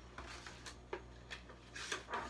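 Paper pages and cover of a paperback picture book rustling and brushing against each other as the book is handled and closed: several short soft rustles, the longest near the end.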